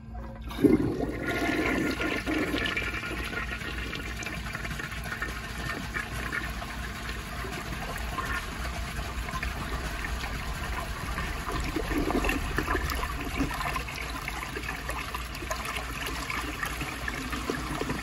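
A 1955 Eljer Duplex toilet flushing: a sharp clunk of the trip lever about half a second in, then a long rush of water swirling down the bowl that carries on at a steady level.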